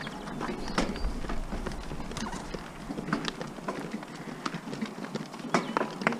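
A carriage horse's hooves clip-clopping on a gravel track, with sharp, irregular strikes over the steady crunch of the carriage rolling.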